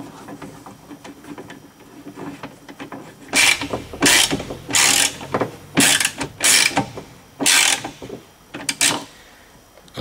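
Ratchet wrench turned back and forth to tighten a screw on a car window regulator support, its pawl clicking in a run of short bursts roughly every two-thirds of a second, starting about three seconds in.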